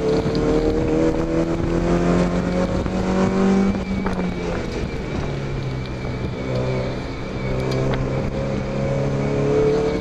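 Mazda MX-5 four-cylinder engine under hard acceleration on track, heard from inside the open cockpit. Its pitch climbs for about four seconds, then drops and runs lower for a few seconds, then climbs again near the end.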